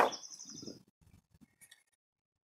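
Scissors: one sharp click at the very start, then soft rustling of yarn and craft sticks being handled, dying away within the first second, with a few faint ticks later.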